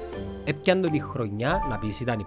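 A man talking, with a bell-like chime of several steady, ringing tones sounding under his voice in the last half-second.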